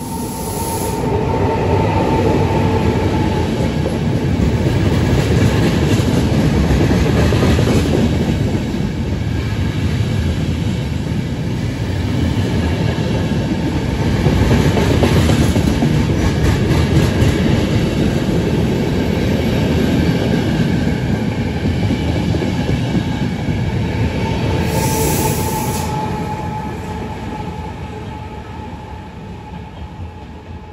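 Intercity Notte passenger train hauled by E464 electric locomotives passing through the station at speed: a steady, loud rumble of wheels on rails. A thin high whine is heard at the start and again about 25 seconds in. The sound fades as the train draws away near the end.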